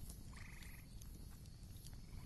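Faint background ambience with one short trilled animal call, rapidly pulsed and about half a second long, shortly after the start, over a low hiss.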